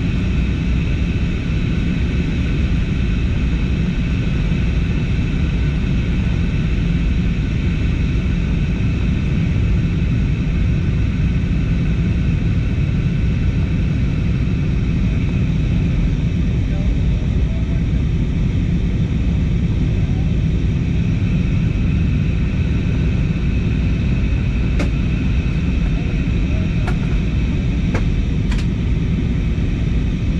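Steady cabin noise of a jet airliner on descent, heard from inside the cabin: a constant heavy rumble of engines and airflow with a steady whine above it. A few short clicks near the end.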